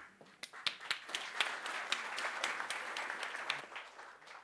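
Audience applauding: scattered claps that thicken into steady applause about half a second in, then die away near the end.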